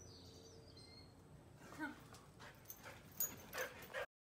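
A pet dog whining briefly about two seconds in, followed by a few short, sharper and louder sounds and clicks near the end.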